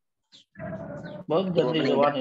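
A person's voice speaking after a brief pause, starting about half a second in and growing louder near the end; the words are unclear.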